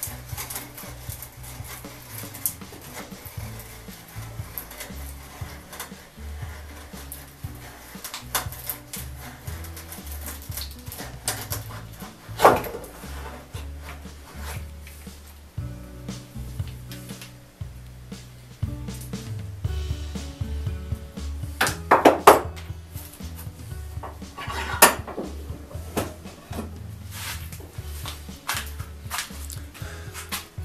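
Background music with a stepping bass line, over the clicks and scrapes of a hand brace turning a 1-1/8-inch (number 20) auger bit through a wooden board. A few sharp cracks stand out, about 12 and 22 seconds in.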